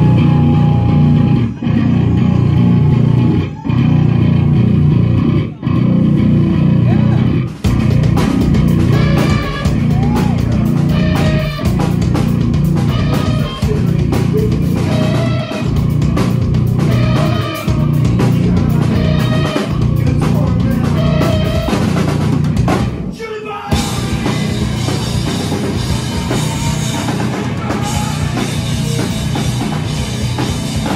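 Punk rock band playing live, with drum kit, electric guitars and bass. The band plays short stop-start hits in the first several seconds, and a sung vocal line comes in after about eight seconds. There is a brief break a little past twenty seconds, and then the full band plays on.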